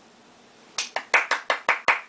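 A person clapping their hands about seven times in quick, even succession, starting about three-quarters of a second in.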